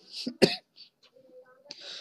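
A man's brief cough about half a second in, between chanted phrases, then a soft in-breath near the end.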